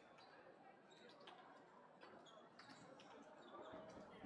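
Faint sports-hall sound: handballs bouncing on the court floor now and then, over distant, indistinct voices.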